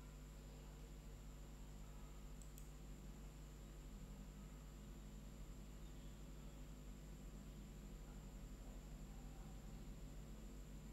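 Near silence: faint steady electrical hum of the recording, with one faint click about two and a half seconds in.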